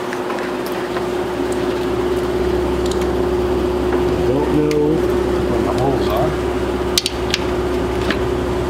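Light clicks and clatter of parts being handled at a car's radiator hose, over a steady hum that sets in at the start; one sharper click comes about seven seconds in.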